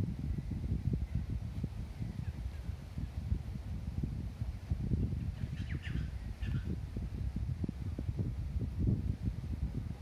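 Uneven low rumble of wind buffeting the microphone outdoors, with a few faint bird chirps about five to six seconds in.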